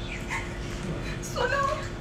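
A woman crying over an unconscious person, with short whimpering sobs and a louder wavering wail a little past halfway.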